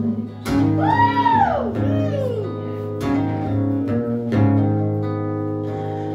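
Acoustic guitar strummed in an instrumental passage between sung lines of a song, its chords ringing on between a few sharp strums. About a second in, a high sliding tone rises and falls, and a shorter one falls near two seconds.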